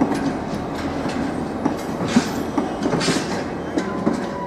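Bogie stone hopper wagons of a freight train rolling past, their wheels clacking over rail joints in an irregular clickety-clack over a steady rumble, with short hissing bursts. A faint steady wheel squeal starts near the end.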